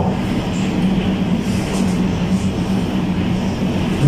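A steady low hum over an even, constant rushing noise, with no change from start to end.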